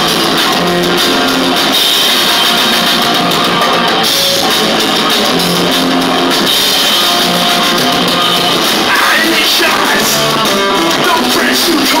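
Hardcore punk band playing live at full volume: distorted electric guitar, bass guitar and drums in a passage with no singing.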